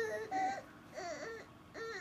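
Baby fussing while crawling: a string of short, whiny cries, about four in two seconds. They are cranky, frustrated cries, not cries of pain.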